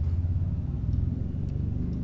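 A steady low rumble with a fast, fine flutter.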